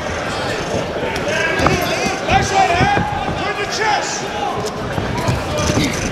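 Live ringside sound of a boxing bout: gloved punches and footwork on the ring canvas making repeated short thuds, with voices shouting in the background.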